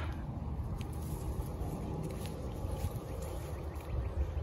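Steady low rumble, with faint rustling and small ticks of weeds being pulled up by hand.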